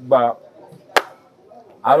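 A single sharp click about a second in, between short stretches of a man's speech.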